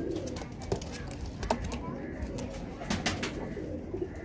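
Domestic pigeons cooing low, with a few sharp clicks and knocks, the loudest about a second and a half in and around three seconds in.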